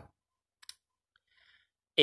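Near silence in a pause between words, with one faint, short click about two-thirds of a second in and a barely audible breath after it.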